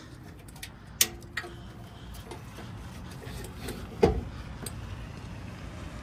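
Folding boarding ladder on a pontoon boat's stern being swung down into place: a sharp click about a second in, small rattles, and a heavier thump about four seconds in.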